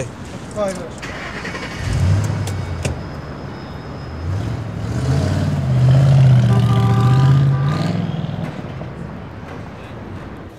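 Ford Mustang convertible's engine starting about two seconds in, then revving up as the car pulls away, loudest around two-thirds of the way through and fading near the end.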